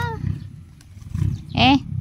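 A puppy growling in play while biting and tugging at a leafy branch: a rough, low rumble that comes in uneven pulses.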